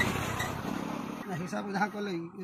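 A passing motor vehicle, its noise fading out within the first half second, followed by a voice with drawn-out, wavering pitch.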